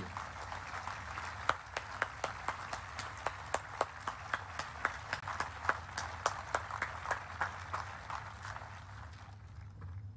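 Large audience applauding, with many sharp individual claps standing out over the steady clapping, dying away about nine seconds in.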